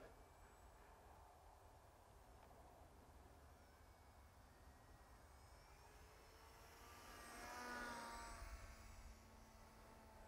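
Near silence, with the faint, distant whine of the Micro Draco's electric motor and propeller rising and falling in pitch as it passes, about three-quarters of the way in.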